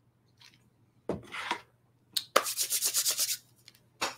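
A close rubbing or scratching noise: a short knock, then a rapid run of scrapes lasting about a second.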